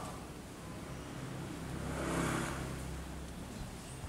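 A low engine hum passing by, swelling to its loudest about two seconds in and then fading, typical of a motor vehicle going past outside.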